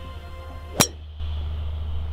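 A golf driver striking a ball off the tee: one sharp, ringing click, about a second in. The ball is topped slightly.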